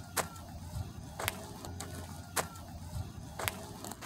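Slow footsteps on gritty concrete: four sharp steps about a second apart, over a faint low hum.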